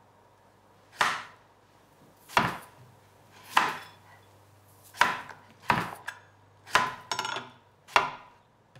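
A series of sharp knocks, seven of them, spaced unevenly about a second apart, with a short rattle after the one near the end.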